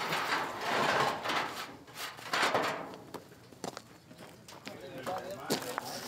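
Metal shovel scraping and scooping hot coals in a barbecue pit, in long rasping strokes during the first three seconds, then lighter clinks and knocks.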